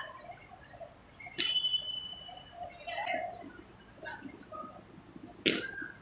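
A cricket bat strikes a ball with a sharp crack about five and a half seconds in, the loudest sound. About a second and a half in there is another sharp crack with a brief high ring, and faint voices call in between.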